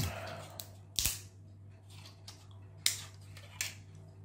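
3D-printed plastic parts being handled and fitted together. One sharp click comes about a second in, and two lighter clicks follow near the end.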